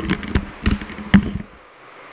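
A quick run of taps, knocks and clatter from an object being handled on the desk close to the microphone, lasting about a second and a half, then stopping.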